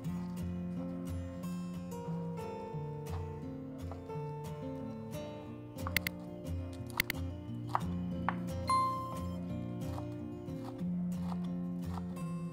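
Instrumental background music with held notes and a pulsing bass, over which a few sharp knocks of a chef's knife chopping leaves on a bamboo cutting board stand out around the middle.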